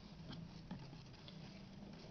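Faint handling noise: a few light taps and rustles as hands move the tray and press the trim, over quiet room tone.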